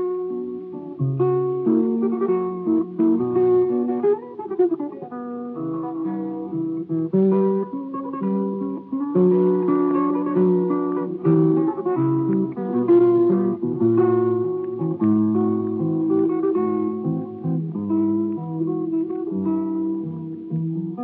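Solo classical guitar playing a waltz, a plucked melody over bass notes, from a remastered 78 rpm record.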